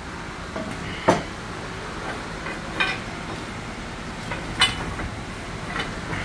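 A few sharp metal-on-metal clinks and knocks, a second or two apart, the loudest about a second in, over a steady shop background: steel tools and engine parts knocking as a car engine hanging from a hoist chain is pried and worked loose.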